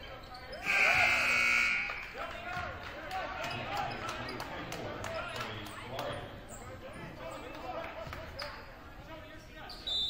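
Gym scoreboard horn sounds once, a steady buzz of about a second and a half, the loudest thing here. Then a basketball bounces on the hardwood among players' and spectators' voices, and a short high whistle blast comes right at the end.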